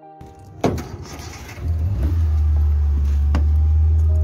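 Car cabin sound: a sharp knock about half a second in, then a loud, steady low engine rumble inside the car from about two seconds on, with a few faint clicks.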